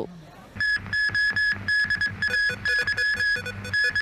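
Television news theme music starting about half a second in: an electronic synth figure of quick, repeating beep-like tones over a steady low pulse.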